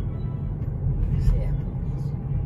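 A car's engine and tyres running with a steady low rumble, heard inside the cabin while driving, with the car stereo playing music underneath.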